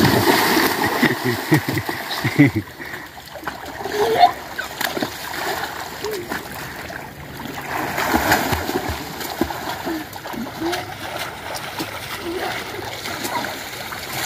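Water splashing in a shallow stream pool as boys dive in, kick and swim, starting suddenly with a big splash and continuing in irregular bursts of splashing. Voices shout and call over the splashing.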